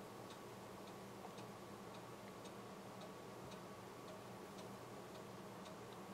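Faint regular ticking, about two ticks a second, over a low steady hum.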